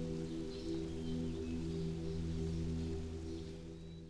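Soft background score of sustained, held notes like a drone, fading out near the end.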